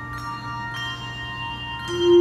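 Handbell choir playing: several handbells ring together in sustained, overlapping tones, with fresh bells struck about a second in and again near the end.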